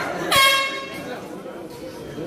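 A horn sounds once in a short, steady blast of under a second, starting about a third of a second in. It is typical of the signal that ends a round in a cage fight. Crowd voices run underneath.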